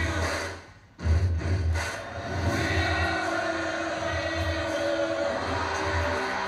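Music from a television news channel's promo or commercial heard in the room, with a pulsing low beat and held tones. It fades out briefly just before a second in, then cuts back in sharply as the next segment starts.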